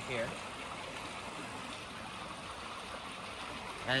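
Shallow stream running over stones, a steady rush of water.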